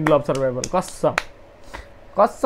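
Speech for about the first second, then a pause with a few short sharp clicks like finger snaps.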